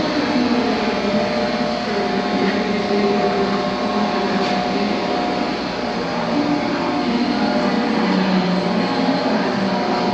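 Patterson-Kelley stainless steel V-blender running, its electric motor and belt drive turning the twin shell with a steady mechanical hum and whir.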